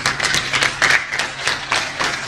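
Applause from an audience, with individual hand claps heard distinctly and irregularly, several a second.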